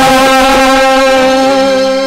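Live stage music: a keyboard instrument holding one steady chord, with no singing over it.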